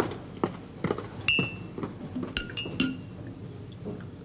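China cups and saucers clinking and knocking as they are handled on a kitchen table: a series of short clinks, two of which ring briefly, about a second in and again past the middle.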